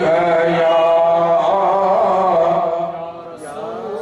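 A man's voice chanting the salawat, blessings on the Prophet, into a microphone, drawing one syllable out into a long, slowly wavering melodic line. It drops away briefly near the end before the chant goes on.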